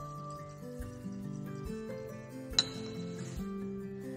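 Soft background music with held notes. About two and a half seconds in, the glass conical flask gives a single sharp clink with a brief ring.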